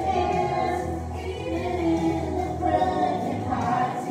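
Two women and a young girl singing a Christian song together into microphones, their voices amplified through the sound system over a steady musical backing.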